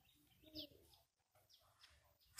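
Near silence with faint bird calls: a low call about half a second in and a few thin high chirps.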